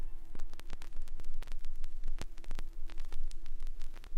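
Vinyl record surface noise in the blank groove between two tracks: irregular clicks and pops over a steady hiss, with a faint steady hum underneath.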